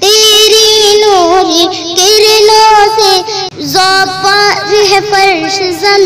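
A high-pitched solo voice singing a naat in long, drawn-out notes with wavering ornaments, no distinct words, and a short break for breath about three and a half seconds in.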